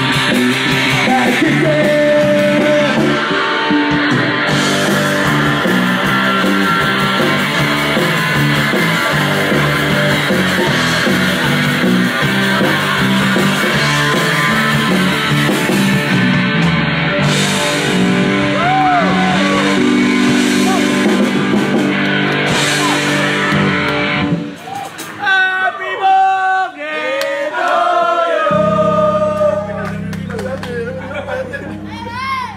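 Live oi! punk band playing, with electric guitars, bass, drums and singing at a steady loud level. The song ends abruptly about 24 seconds in, followed by scattered shouting voices and, near the end, a steady low hum.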